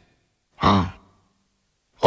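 A man's single short, sighed 'haan' (yes) about half a second in; the rest is silence.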